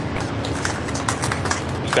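Hiss and hum of the control-room audio feed, broken by a string of sharp, irregular clicks, several a second.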